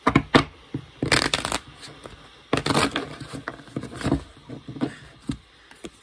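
A deck of tarot cards being shuffled by hand, in several short bursts.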